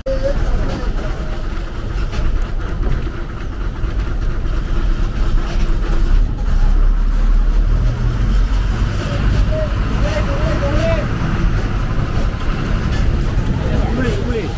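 KSRTC bus's diesel engine running as the bus drives, a deep steady rumble heard from inside the cabin by the open door, with voices in the background.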